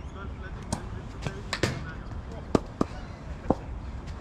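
Half a dozen sharp, irregular knocks, some with a short ringing 'tock', of cricket balls being struck and landing in neighbouring practice nets, over faint distant voices.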